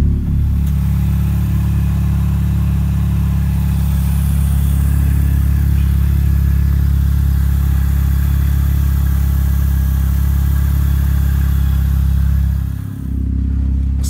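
Supercharged four-cylinder engine of an R53 Mini Cooper S idling steadily, with a low, even hum. Its level dips briefly about a second before the end.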